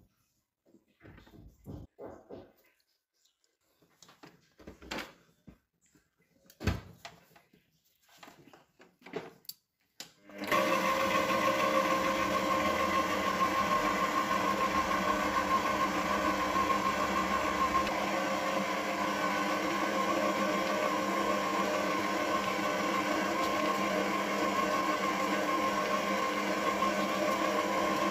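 Faint scattered clicks and knocks as a flat paddle beater is fitted to a stand mixer. About ten seconds in, the mixer's motor switches on and runs with a steady hum as the paddle mixes flour into butter cookie dough.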